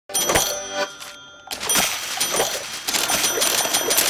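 Cartoon cash register sound effect: a ringing ding as the keys are struck, then, after a short lull, a busy jingling clatter threaded with steady high ringing tones.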